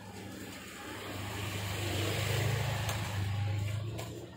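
Motor scooter passing close by, its engine growing louder through the middle and dropping away near the end.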